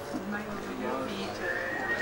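A person's voice making a drawn-out, wavering low sound. About three-quarters of the way in, a thin high steady whistle-like tone starts and rises slightly in pitch.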